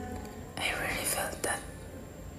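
A faint whispered voice, about a second long, starting about half a second in.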